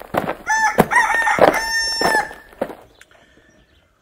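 A rooster crowing once, a long crow of under two seconds, with a few sharp knocks around it.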